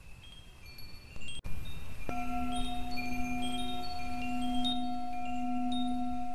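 Wind chimes tinkling with scattered high notes, then a singing bowl struck about two seconds in and left ringing steadily with a slow wobble in its tone.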